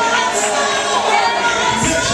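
A congregation of many voices shouting and crying out at once in loud worship, overlapping without a break.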